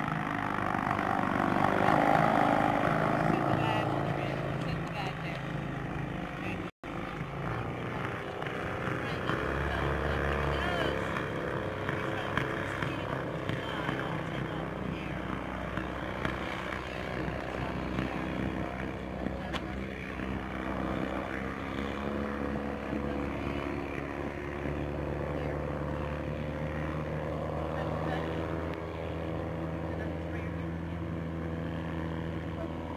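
Engine and propeller of a single-seat gyrocopter running at a distance as it taxis: a continuous drone of several steady engine tones, its note shifting a little as it goes.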